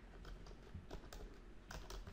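Faint typing on a computer keyboard: about half a dozen separate keystrokes as a word is typed in.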